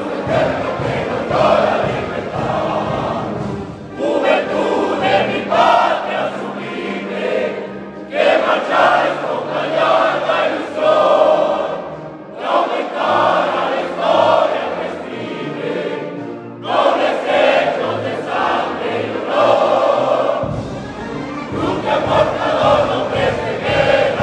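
A group of military cadets singing together, a chorus of young men's voices, in phrases of about four seconds with short breaks between them.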